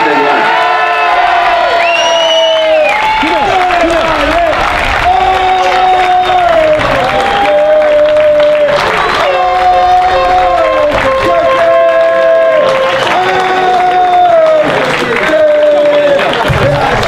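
A crowd applauding at a football medal presentation while a simple tune of long held notes plays.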